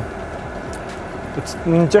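Steady cabin noise inside a coach bus, an even rumble and hiss of the bus running, with a couple of faint ticks. A man's voice comes back in near the end.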